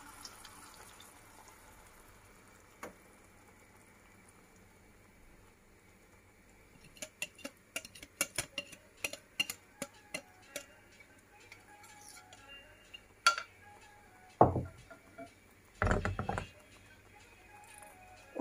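Batter being poured and scraped out of a mixing bowl into a frying pan over a faint sizzle of hot oil. Partway through comes a quick run of light clicks and scrapes of a utensil against the bowl, then a few louder single knocks of kitchenware.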